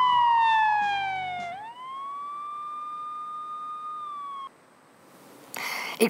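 Siren-like tone from a crime-news title sting. It slides down in pitch as the intro music fades out beneath it, swoops back up about a second and a half in and holds, then cuts off suddenly about four and a half seconds in. A brief hiss comes just before the end.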